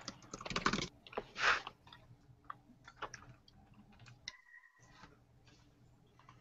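Computer keyboard typing: quick runs of key clicks, densest in the first second, then scattered single clicks. A short electronic tone sounds about four seconds in.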